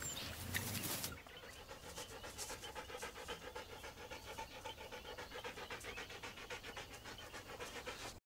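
An African wild dog panting in a rapid, even rhythm. A louder noise fills the first second and cuts off suddenly.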